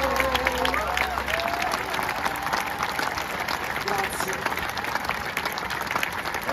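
Large concert audience applauding, with a few scattered voices. The last held sung note and the orchestra die away in the first second or so.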